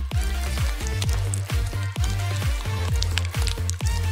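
Background music with a steady drum beat, about three kicks a second, over a bass line.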